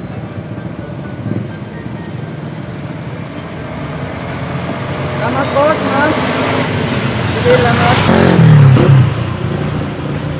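A motor vehicle passing along the street, its noise building to a peak about eight and a half seconds in and then easing off, over background music and voices.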